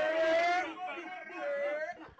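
A voice over the microphone, drawn out and gliding in pitch rather than spoken in short words, dying away near the end.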